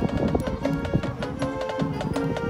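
A marching band and its front ensemble playing, held pitched notes over a steady run of sharp percussive clicks.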